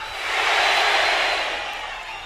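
Live audience cheering in reply to a call from the stage, swelling about half a second in and fading away toward the end.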